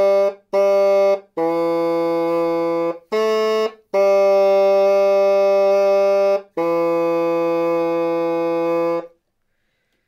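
A tenoroon (junior bassoon) plays finger-exercise pattern B slowly, tongued note by note: D, D, a longer B, a short E, then a long D and a long B, each held about two and a half seconds. The notes are clear and steady, and the playing stops about a second before the end.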